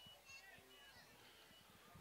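Near silence: faint field ambience with brief, distant voice-like fragments.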